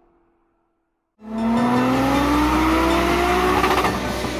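A car engine accelerating, its note rising steadily for nearly three seconds; it cuts in suddenly about a second in, after a moment of silence.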